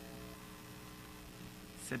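Steady electrical hum, like mains hum on the audio line, in a pause between spoken phrases. A man's voice starts again right at the end.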